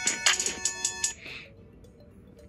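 Short electronic intro jingle from a YouTube video playing on a laptop: a few bright, steady synth notes with sharp starts, stopping abruptly about a second in.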